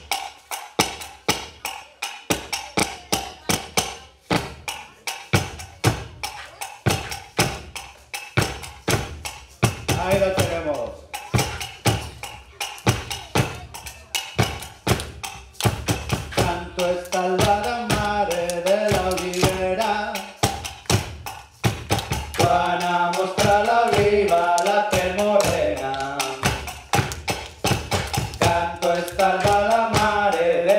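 Wooden staffs and sticks knocked in a steady three-beat rhythm. About ten seconds in a voice starts singing an albada, a traditional song, over the beat, with the singing growing fuller from about sixteen seconds.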